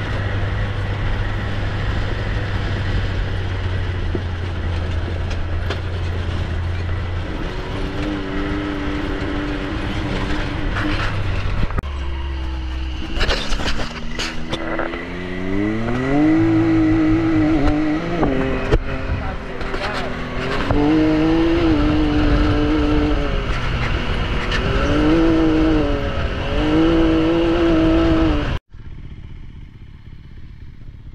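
Can-Am Maverick X3 side-by-side engine running steadily while driving a dirt track. Partway through, a KTM motocross bike's engine takes over, revving up and down repeatedly. Near the end the engine sound cuts off abruptly to a much quieter outdoor background.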